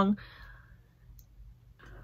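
A pause in a woman's talk: the tail of her last word, a soft breath out, a near-quiet stretch with a faint mouth click, then a breath in just before she speaks again, over a low steady room hum.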